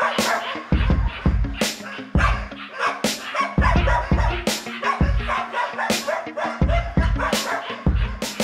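Belgian Malinois dogs barking over background music with a steady drum beat.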